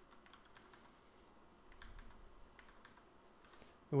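A handful of faint, irregular computer keyboard keystrokes, a few coming closer together about two seconds in.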